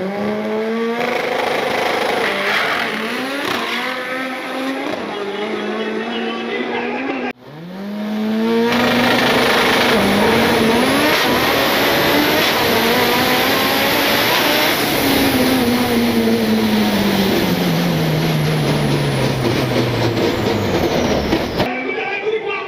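Turbocharged Chevrolet Chevette drag car making a pass: the engine's pitch climbs again and again in steps as it shifts up through the gears, then falls steadily over the last several seconds as the car slows after the run. The sound cuts out abruptly for a moment about seven seconds in, and after the cut the engine is heard from on board the car.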